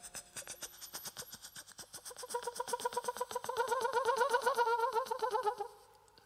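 Beatboxing into a studio microphone: a fast, even run of mouth clicks, about ten a second. About two seconds in a hummed tone with a wobbling pitch joins it and grows louder, then fades out near the end.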